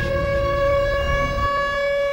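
A single steady, high electronic tone held unchanged in a break in the music, over a low rumble that fades out near the end.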